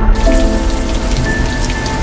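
Shower spray running: a steady hiss of falling water that starts abruptly right at the beginning, with held notes of background music underneath.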